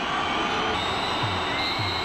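Stadium crowd noise with music playing in the stadium, a low beat recurring about twice a second in the second half.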